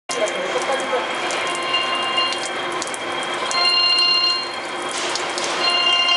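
Many thin streams of water pouring and dripping from the open flanged end of a large steel pipe and splashing below, a steady rushing patter. Over it a high machine whine comes and goes about every two seconds, each time for about a second.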